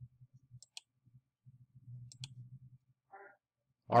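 Light computer mouse clicks, two quick pairs about a second and a half apart, over a faint low rumble.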